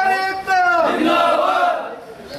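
A group of men chanting protest slogans together in loud, drawn-out shouts, which die away near the end.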